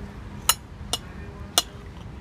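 Metal knife and fork clinking against a ceramic plate while cutting food: three short, sharp clinks.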